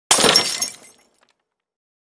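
A sudden shattering crash with a bright, tinkling tail that dies away within about a second.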